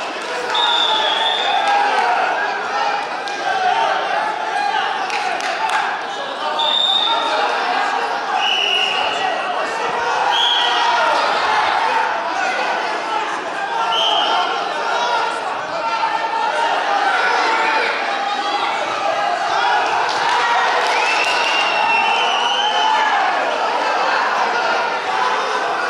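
Indoor arena crowd during a wrestling bout: a steady hubbub of many voices talking and calling out, echoing in the hall. Several brief high-pitched tones sound now and then through it, one rising near the end.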